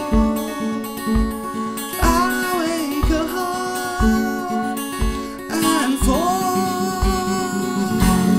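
Fingerpicked Yamaha CJ-818SB steel-string acoustic guitar playing a fast, driving repeated pattern. A boot stamps on the floor about once a second to keep the beat.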